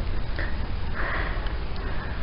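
A person sniffing twice, a brief sniff and then a longer one about a second in, over a steady low rumble.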